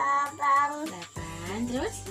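A child's singing voice over background children's music with steady held notes; the voice is loudest in the first second.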